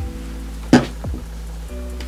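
Background music, with one short, loud burst of a pump spray bottle misting onto a fingertip about a second in.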